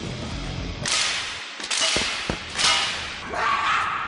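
Fight sound effects in a TV drama brawl: a quick run of swishing whooshes from swung punches and kicks, with a couple of dull thuds of blows landing in the middle.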